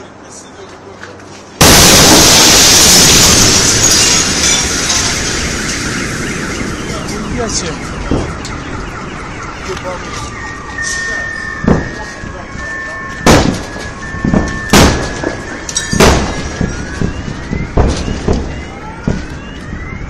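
A meteor's shock wave arrives as a sudden, very loud blast about a second and a half in, dying away slowly over several seconds. Later, car alarms set off by it sound with steady tones, with several sharp bangs among them.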